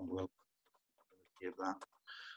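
A man's voice over a webinar microphone: the end of a drawn-out hesitation 'um', a pause of about a second, then a single short word.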